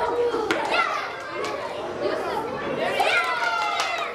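Children's voices calling and chattering in a hall, with a few sharp clicks of ping-pong balls bouncing on a table.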